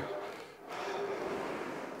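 Aviron indoor rowing machine's flywheel whirring through one drive stroke, a steady rushing noise that picks up about half a second in.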